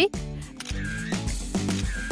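A camera shutter click sound effect for a smartphone photo, over upbeat background music.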